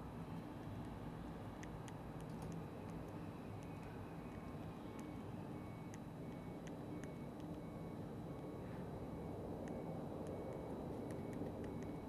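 Faint, scattered fingertip taps on a handheld computer's touchscreen as a message is typed on the on-screen keyboard, over a steady low hum. A faint high tone repeats at even intervals through most of it.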